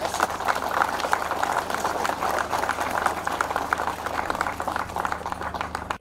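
Crowd applauding: many hands clapping in a dense, even patter, with a steady low hum beneath.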